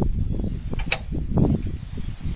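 Wooden tailgate of a utility trailer being worked into its stake pockets: wood knocking and scraping, with a sharp click about a second in, over a low uneven rumble.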